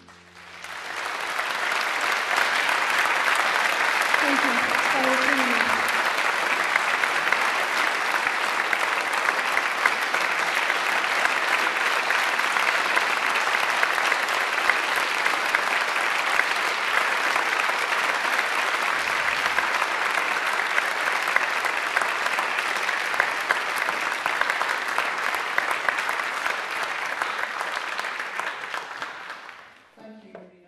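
Audience applauding: a long, steady round of clapping that swells in over the first second or two and dies away near the end.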